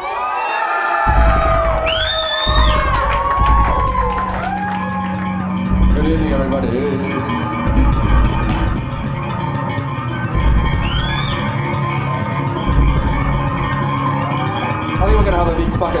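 Live funk band of two bass guitars, saxophone and drums playing loosely, deep repeated bass notes under sliding high notes, with crowd voices and shouts over it. A man starts speaking into the microphone at the very end.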